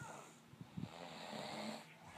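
A sleeping man snoring: one snore that peaks just under a second in, followed by a breathy exhale.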